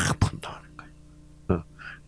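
A man's voice close to a handheld microphone in a pause between phrases: the end of a loud breathy exhale at the start, a few soft whispered sounds, then quiet broken by one short syllable.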